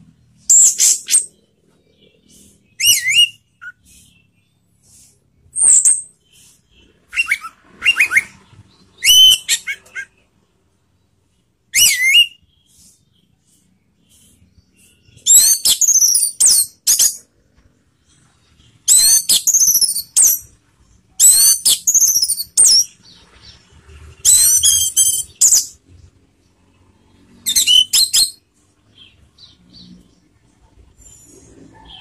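Caged orange-headed thrush (anis merah) singing in the 'teler' style: bursts of rapid, high, sliding whistled notes separated by pauses. The phrases are short and spaced out at first and become longer and more continuous in the second half.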